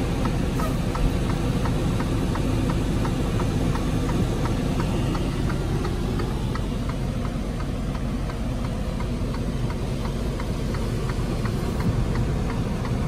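Low, steady rumble of a Freightliner Cascadia semi truck's diesel engine heard from inside the cab, with a regular light ticking about three times a second that fades out a little over halfway through.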